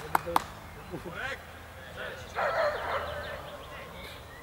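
Two sharp handclaps right at the start, then a low outdoor murmur of distant voices. About two and a half seconds in comes a brief high-pitched call lasting under a second.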